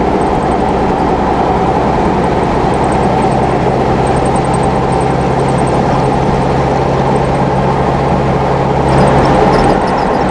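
Steady road noise inside a car's cabin at highway speed: a constant engine drone and tyre roar, a little louder about nine seconds in.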